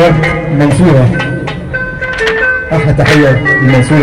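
Live Egyptian folk music from a simsimiyya band: a plucked simsimiyya lyre melody over percussion, with a voice singing or calling over the music through the PA.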